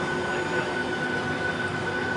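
Cabin noise inside a Boeing 757-200 on the ground with its jet engines running: an even rush of air carrying a steady engine whine, with no change in power.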